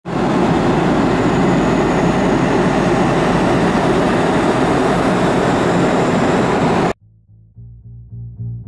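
Steady in-flight cabin noise of a jet airliner, cut off suddenly about seven seconds in. Music with a regular pulse follows in the last second.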